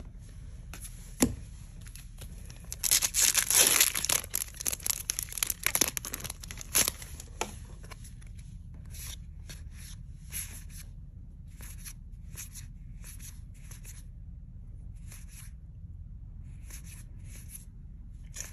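Foil wrapper of a Magic: The Gathering set booster pack torn open, a dense crinkling rip over several seconds, followed by a string of short soft flicks as the cards are slid off the stack one at a time.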